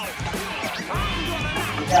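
Background music with a steady beat and a voice over it.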